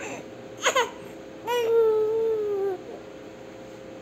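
Young baby vocalizing: a short falling cry just under a second in, then one drawn-out fussing wail lasting about a second, sliding slightly down in pitch. The baby is straining on its back while trying to roll over.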